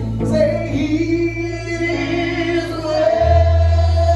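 Live gospel worship music: voices singing long held notes over a band, with a sustained low bass note that shifts lower and louder about three seconds in.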